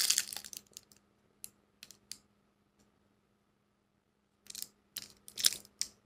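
Plastic wrapping crinkling and light clicks as a handbag is handled: a short burst at the start, a few scattered clicks, a pause of about two seconds, then more crinkling and clicking near the end. A faint steady hum lies underneath.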